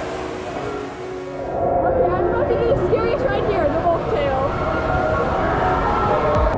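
Water rushing and splashing as an inner-tube raft runs out of a water slide into the pool, under background music. About a second and a half in, the splashing gives way to louder music with wavering vocals.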